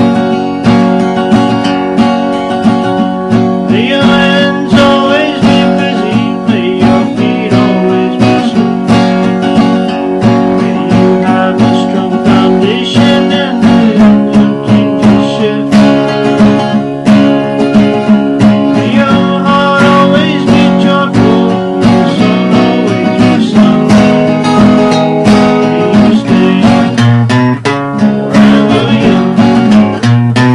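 Steel-string acoustic guitar strummed steadily through chord changes, played solo.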